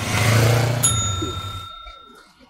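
A rushing whoosh with a low hum swells and fades. About halfway through, a bell like a rickshaw's bicycle-type bell is struck once and rings on, slowly fading.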